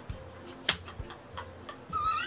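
A few faint ticks and one sharp click a little under a second in, in a quiet stretch between bursts of laughter.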